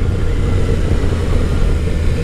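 Wind rushing over the microphone while riding, with the Yamaha FJ-09's inline three-cylinder engine running steadily underneath at road speed; the stock exhaust is so quiet that the engine is barely heard through the wind.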